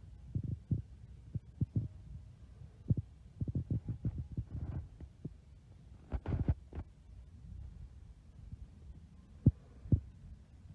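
Handling noise from a handheld phone or camera carried while walking: irregular soft low thumps and rubs, with a few sharper knocks, over a low steady hum.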